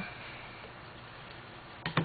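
Quiet room hiss, then two light clicks close together near the end.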